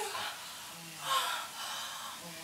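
Short breathy vocal sounds from a person: a gasp-like breath at the start and another about a second in.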